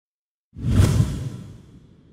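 Whoosh sound effect for an animated logo reveal: it comes in about half a second in, swells quickly and fades away over the next second.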